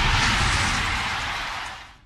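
Sound-effect sting of an animated logo outro: a loud rushing whoosh with a low rumble underneath, fading away toward the end.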